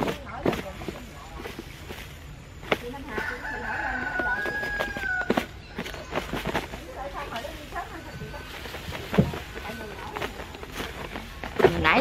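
A rooster crows once, a long call starting about three seconds in, over rattling and a few sharp knocks from tamarind pods and sugar being shaken in a closed plastic box.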